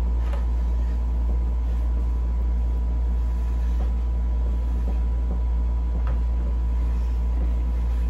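A steady low rumble that does not change, with a faint, thin steady tone above it.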